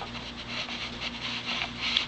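Faint rubbing and rustling handling noise with a few small clicks, over a steady low hum.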